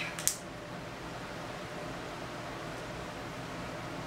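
Steady low hiss of room tone, with no distinct sounds standing out.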